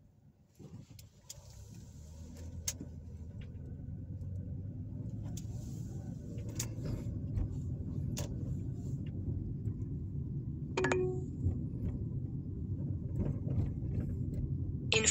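Car cabin road noise as the car pulls away from a stop and gathers speed: a low rumble of engine and tyres that builds over the first few seconds and then holds steady. A few small clicks or rattles are scattered through it, with a brief squeak near the end.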